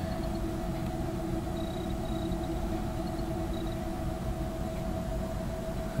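Steady electrical hum and hiss from running radio-station electronics, with two steady tones, one low and one a little higher, and a few faint short high blips midway.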